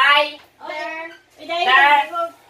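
A girl's voice drawing out a word in three long, loud, sing-song syllables, each about half a second.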